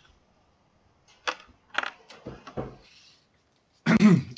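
Handling noise close to the microphone: two sharp clicks about half a second apart, then a few softer knocks and rustling.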